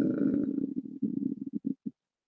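A woman's drawn-out hesitation sound, a low held "euh" that fades and breaks up into short broken pieces after about a second and a half, then cuts off just before the end.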